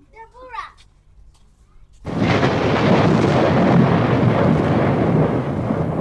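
A loud, steady rushing and rumbling noise, heaviest in the low range, starts suddenly about two seconds in and holds without a beat or pitch, following a brief spoken word or two.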